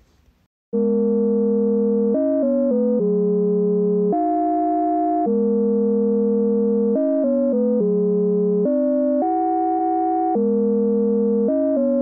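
BandLab's Noir Chord synthesizer preset playing a progression of sustained synth chords, starting just under a second in. Most chords are held for a second or more, with brief runs of quick chord changes in between.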